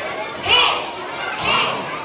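A crowd of young children chattering and shouting together, with louder high-pitched cries about half a second and a second and a half in.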